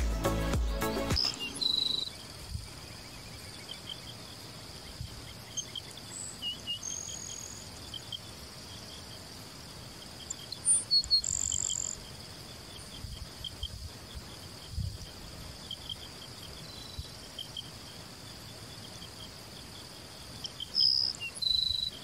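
Grassland sparrow singing short phrases of thin, high-pitched notes, about three times: near 2 s, around 11 s and near 21 s. Behind it runs a steady high insect drone with rapid ticking.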